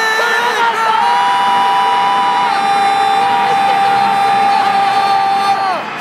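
A broadcast commentator's long, drawn-out goal call: one voice held on a single high note for about five seconds, dropping away near the end. Under it, a stadium crowd cheers the goal.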